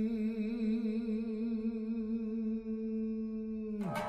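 A voice humming one long low note that wavers with vibrato, as a film soundtrack. Near the end the note slides sharply down into a sudden hit that rings away.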